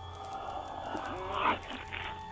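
A throaty, animal-like growl from the vampire as he bends to bite the sleeping woman's neck, swelling to its loudest about a second and a half in, over a sustained music drone.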